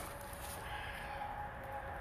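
Quiet outdoor background: a low, even rumble of wind and handling noise on the microphone, with a faint thin steady tone coming in about a third of the way through.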